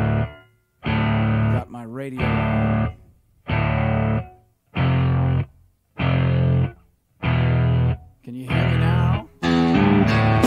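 Distorted electric guitar chords struck and held for just under a second, then cut to silence, repeating about once a second, with one chord warbling in pitch about two seconds in. Near the end the chords stop breaking off and the music runs on.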